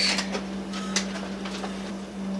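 3D-printed plastic pendulum clock being set going: a few sharp clicks from its escapement and from the pendulum being handled and released, the strongest at the start and about a second in, over a steady low hum.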